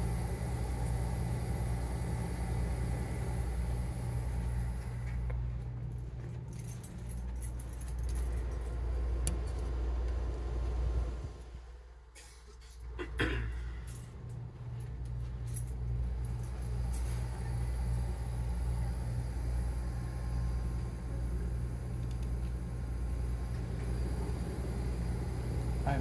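1980s R-22 air-conditioning system running: a steady compressor hum under a loud hiss of refrigerant flowing through the coil, heard up close at the grille. The sound drops away briefly about halfway through.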